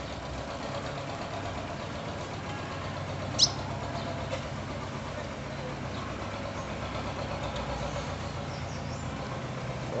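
Steady low hum of an idling truck engine, with one short high chirp from a bird about three and a half seconds in.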